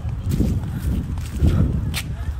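Footsteps walking on a concrete sidewalk, about two steps a second, each a low thud with a light scuff.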